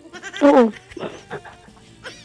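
A short laugh about half a second in, falling in pitch, followed by a few fainter vocal sounds.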